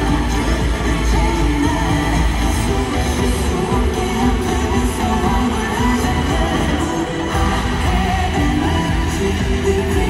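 Live K-pop concert music played loud through an arena sound system and recorded from among the audience: a singing voice over a heavy bass beat.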